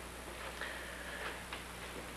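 Quiet room tone on an old videotape soundtrack: a steady low hum and hiss, with a few faint, irregular ticks.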